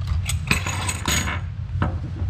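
Small metal hydrant repair parts, a packing nut, pivot connector and steel draw straps, tipped out of their cardboard box and clinking onto a wooden tabletop: a quick run of clinks in the first second and a half and one more click near the end.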